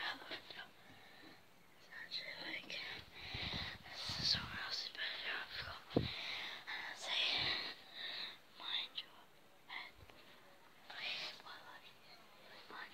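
A boy whispering close to a phone's microphone in short breathy phrases, with one sharp knock about halfway through.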